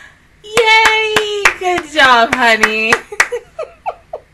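A woman's loud, high laughing shriek, held and then falling in pitch over about two and a half seconds, with a run of hand claps through it, trailing off into short breathless laughs.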